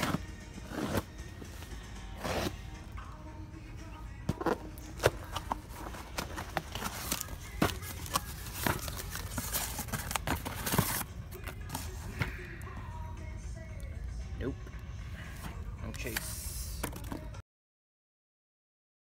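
Cardboard shipping case being handled and its flaps pulled open: sharp crackles and scrapes of cardboard, over store background music and a low steady hum. The sound cuts off suddenly near the end.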